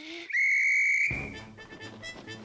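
Hand-held whistle blown in one long, steady, shrill blast of about a second. A rapid fluttering clatter of wing flaps follows as a flock of cartoon pigeons takes off.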